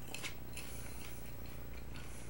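Faint chewing of a mouthful of popcorn, over a steady low hum.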